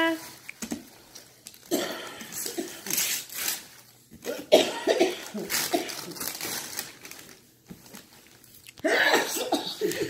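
Wrapping paper rustling and tearing as a child strips it off a gift box, under indistinct voices, with a cough near the end.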